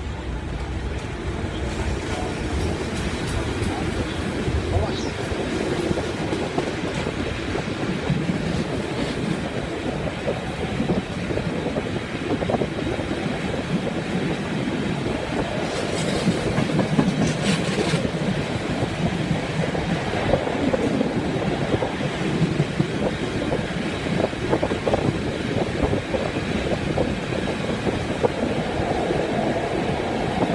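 Czech class 451/452 'Žabotlam' electric multiple unit pulling out and gathering speed, heard from the open window with the rumble of the running gear and rushing air growing louder. Wheels clack over rail joints, with a burst of sharp clattering about 16 seconds in as the train crosses the points.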